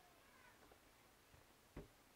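Near silence, with faint short gliding calls in the distance and a single short dull thump near the end.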